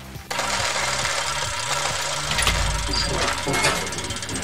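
Mechanical sound effect for a segment's title sting: a steady, rapid machine-like rattle that starts about a quarter second in, with a low rumble swelling up near the middle.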